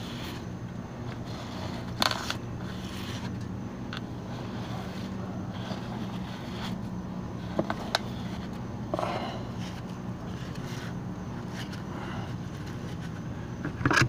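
A few short scrapes and knocks as a clogged gutter with a sponge gutter guard is worked at by hand from a ladder, over a steady low hum.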